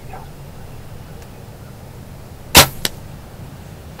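A compound bow is shot once about two and a half seconds in: a single sharp, loud crack, followed a quarter second later by a smaller click.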